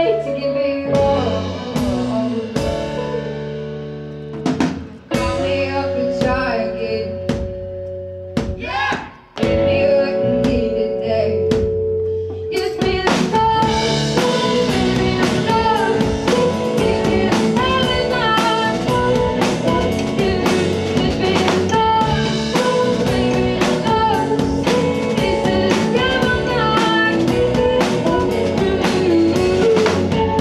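Indie rock band playing live: electric guitars, bass and drum kit, with a woman singing. The first dozen seconds are a sparser passage of held guitar notes and separate drum hits; then the full band comes in with the drums keeping a steady beat.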